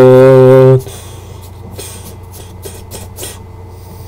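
A man singing unaccompanied, holding the long final note of his song, which stops under a second in. After it come only a steady low hum and a few faint clicks.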